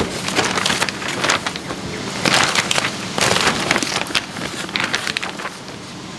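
Wrapping paper rustling and crinkling as a present is wrapped by hand, in a run of crackling bursts, loudest about two and three seconds in.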